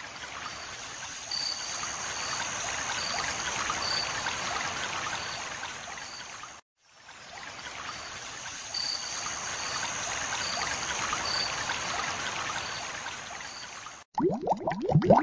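Flowing water with a steady rushing and trickling, swelling and fading. It cuts out briefly about halfway through and the same stretch of water sound starts over.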